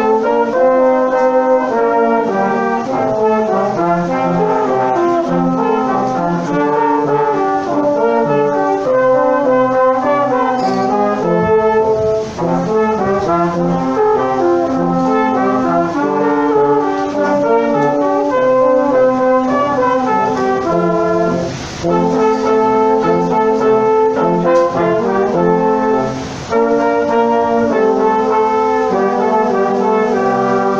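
Brass quintet of two trumpets, French horn, trombone and tuba playing a Christmas medley in harmony, with two short breaks between phrases late on.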